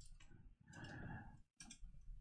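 Faint keystrokes on a computer keyboard, a few quiet clicks over near silence.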